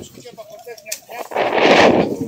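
A loud rush of noise on the camera's microphone, building about one and a half seconds in and lasting about half a second, like a gust of wind or a jacket brushing against the microphone, with faint voices before it.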